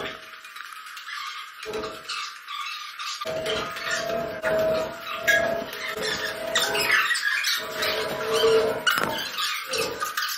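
A person climbing a long staircase: footsteps on the steps and heavy, out-of-breath breathing.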